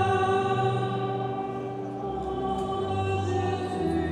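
Sacred choral music: slow, held chords over a low bass line, the chord changing every second or two.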